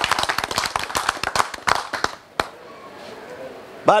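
A small group of people clapping, a quick dense patter of hand claps that stops about two seconds in, followed by one last lone clap. Then quiet room tone until a man starts to speak at the very end.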